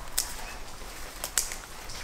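Scissors snipping through basil stems: three sharp snips, the last two close together just past the middle.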